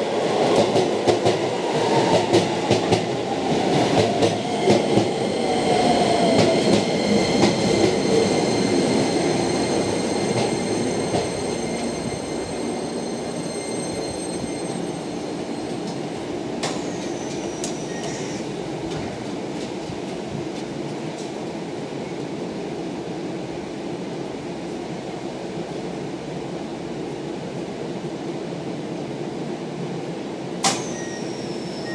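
Keisei electric commuter train pulling in and braking: its motors whine, falling in pitch as it slows, and the wheels click over the rail joints. About ten seconds in, the sound settles into the steady hum of the train standing at the platform, with two brief high swishes a little past halfway.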